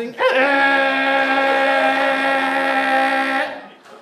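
A ventriloquist's voice singing a warm-up note for his volunteer, rising briefly and then held on one steady pitch for about three seconds before breaking off. It sounds like a ship's horn.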